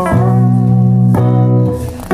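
Live band music led by guitars playing held chords, with a new chord struck about a second in and the sound dipping briefly near the end.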